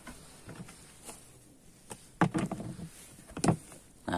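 Plastic lid being handled and lifted off a plastic rice-storage bucket: a few light knocks, then a louder burst of scraping and knocking about halfway through and a sharp knock near the end.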